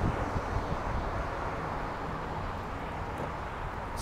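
Steady outdoor background noise on a phone microphone: a low rumble with a hiss over it, and no distinct events.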